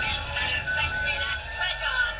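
Tinny music with singing voices from a Lemax animated pirate village piece's small built-in speaker.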